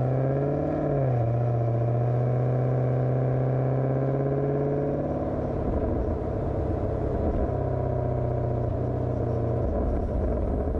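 Maserati GranTurismo Sport's V8 engine and exhaust under way. The note climbs in the first second, dips briefly, then holds a steady cruising pitch, and turns rougher and less even from about halfway.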